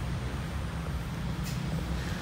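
Steady low rumble of road traffic, with one faint click about one and a half seconds in.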